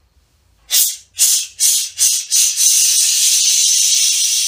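A run of short, sharp hisses that merge into one long, steady hiss.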